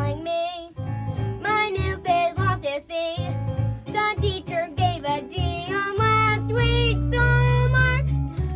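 A young girl singing a musical-theatre song over a recorded backing track with a regular bass beat; near the end she holds a long note.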